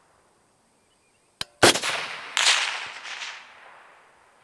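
Suppressed DRD Paratus 16-inch .308 Winchester rifle firing a single shot about a second and a half in, just after a short sharp click. The report rolls away and fades over the next two seconds.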